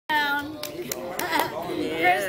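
A voice, with a few sharp hand claps about a third of a second apart.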